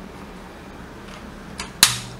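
A single sharp plastic click near the end as a part is snapped back onto a Bruder toy snowmobile, with faint handling noise before it.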